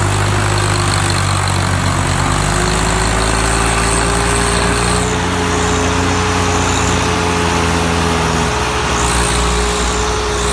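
Tractor diesel engine running steadily under load in deep sand, its pitch rising slowly a couple of seconds in and then holding.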